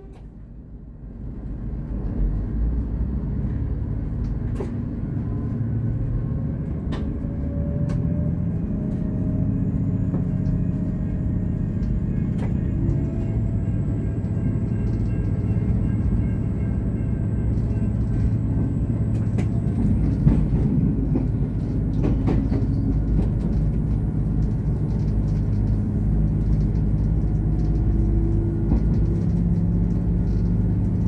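VLocity diesel railcar pulling away and accelerating, heard from inside the driver's cab: a low engine and driveline rumble builds about a second in, with a whine that rises slowly in pitch as it picks up speed. Scattered sharp clicks run through it.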